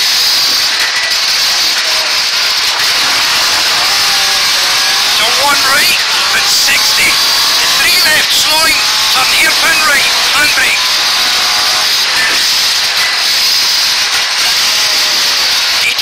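Ford Escort Mk2 rally car's Pinto four-cylinder engine driven hard, heard from inside the cabin, with revs climbing again and again through gear changes in the middle of the stretch over a constant rush of road and wind noise.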